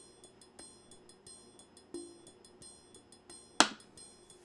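A music-box tune of short, high, plinking notes, with a few lower notes under them. A single sharp knock sounds a little before the end and is the loudest moment.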